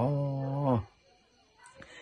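A man's voice holding a drawn-out syllable at a steady pitch for just under a second, then breaking off into a short pause.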